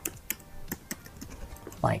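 Computer keyboard being typed on: a quick, uneven run of light key clicks as a short word is entered.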